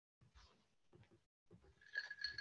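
Near silence on a video-call audio line, broken only by a few faint, brief soft sounds; a thin high tone begins right at the end.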